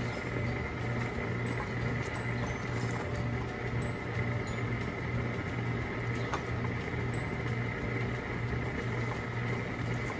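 A steady low hum with a faint hiss, under a wooden spoon stirring thick pecan praline candy in an aluminium pot, with a few light knocks of the spoon.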